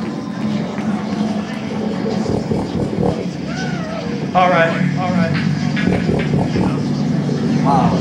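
Live metal band through a club PA: a steady, droning wall of distorted guitar and bass, with loud shouted voices coming in about halfway through and the sound getting louder from there.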